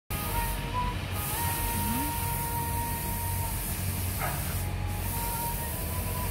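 Steady outdoor background noise: an even hiss with a low hum underneath, and a faint thin steady tone held for about two seconds in the middle.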